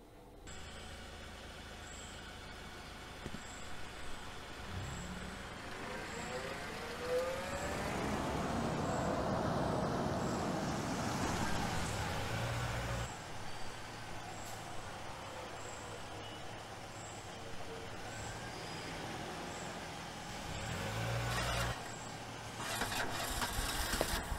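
Small hatchback's engine running as the car moves slowly, its note rising about five seconds in as it speeds up, then settling back to a steady low hum, with a second swell near the end.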